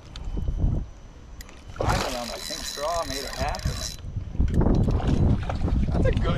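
Water splashing as a hooked smallmouth bass thrashes at the surface beside the boat, with wind buffeting the microphone and a short voice sound about three seconds in.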